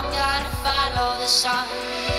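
A song with singing played at full volume through a OnePlus 2 smartphone's loudspeaker.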